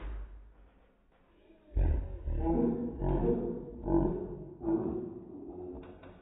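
Slowed-down coughing and choking of a man who has just taken a mouthful of dry ground cinnamon, stretched by the slow motion into deep, drawn-out groans. A short puff of breath blows the powder out right at the start, then a run of loud, low coughs comes from about two seconds in until near the end.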